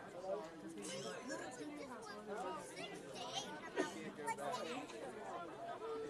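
Indistinct chatter of voices talking, with one short sharp knock a little before four seconds in.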